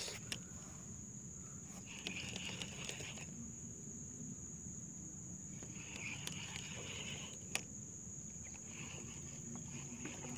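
Insects in the surrounding forest: a steady high-pitched whine with three buzzing bursts of about a second each. A single sharp click comes about 7.5 seconds in.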